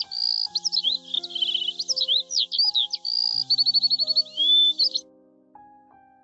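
Songbird chirps and whistles, including a fast trill and a rising whistle, over soft piano music. The birdsong stops suddenly about five seconds in, and the piano carries on.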